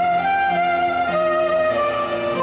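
Soprano saxophone playing a slow melody of held notes, over electric keyboard accompaniment.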